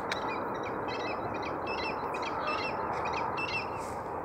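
A bird calling in a quick series of short, high chirping notes, over a steady background hiss.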